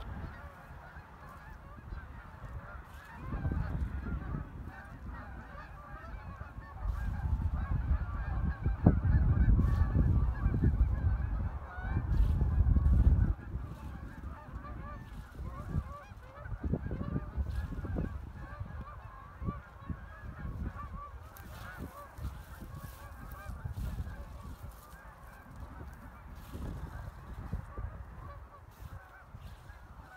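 A large flock of birds calling continuously, many calls overlapping. Wind rumbles on the microphone, heaviest from about 7 to 13 seconds in.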